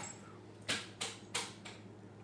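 Chopped tomato dropped by hand onto crisp tostadas topped with lettuce: four short, soft rustling taps about a third of a second apart, over a faint steady hum.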